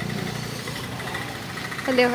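Steady low rumble of an idling vehicle engine, with a voice starting near the end.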